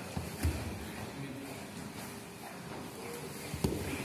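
Grapplers' bodies scrambling and thudding on tatami mats, with a heavy thump about half a second in and a sharp one near the end, over the background noise of a large hall.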